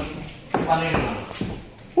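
Speech: a man's short spoken phrase about half a second in, with a few light knocks and shuffling around it.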